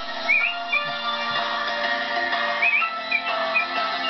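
Instrumental intro of a karaoke backing track for a Russian pop song: sustained synth chords with a short, high, whistle-like melodic figure that comes back a few times.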